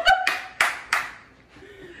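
Hand clapping, four quick claps about a third of a second apart, with a short laugh near the start.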